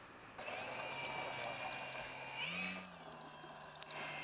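A radio-controlled model airplane's motor running with a steady high-pitched whine over a low hum, revving up briefly about two and a half seconds in, then cutting off abruptly near three seconds. A single sharp click comes just before the end.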